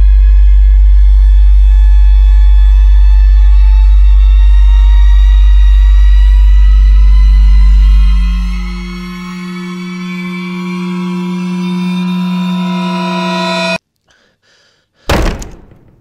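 Horror-film score: a very loud low drone that fades out about eight seconds in while held tones swell in a rising build. The music cuts off suddenly, and after a second of silence a single loud hit sounds and dies away.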